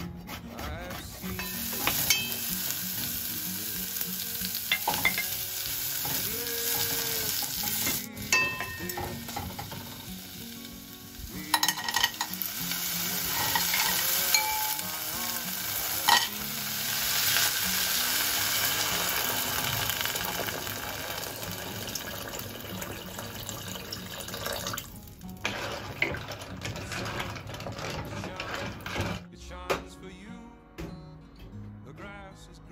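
Seafood frying with a sizzle in a saucepan on a gas stove, stirred with a wooden spatula, with knocks and clatters of utensil and shells against the pan; about halfway in, a handful of clams clatters into the pot.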